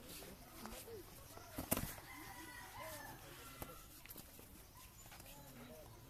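Boxing gloves landing in a sparring bout: a few sharp smacks, the loudest near two seconds in, over faint background chatter.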